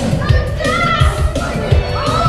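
Karaoke music with a beat playing loudly through the stage speakers, with children's voices and shouts over it.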